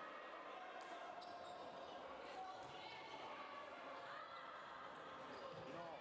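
Handball bouncing on the hard floor of a sports hall with a few sharp knocks, the clearest about a second in, under shouts from players and onlookers.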